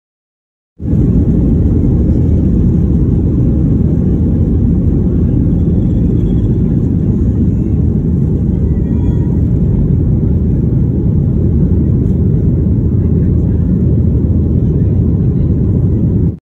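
Cabin noise of a Southwest Boeing 737 during takeoff, heard through a phone: a loud, steady low rumble of the jet engines at takeoff power as the plane rolls down the runway and climbs away. It starts abruptly about a second in.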